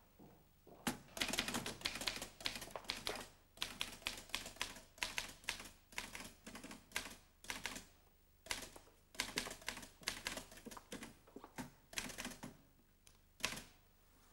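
Manual typewriter being typed on: quick runs of sharp key strikes with short pauses between the runs.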